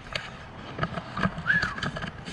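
A string of light, irregular clicks and knocks from handling, with one brief high squeak about one and a half seconds in.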